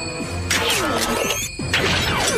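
Dramatic TV-show soundtrack music with two sudden, loud noisy sound-effect hits, about half a second in and near the end, each trailing a falling squeal.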